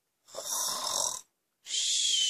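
A person imitating snoring: two long, breathy snore sounds, one starting a moment in and the next just before the end, with silence between them.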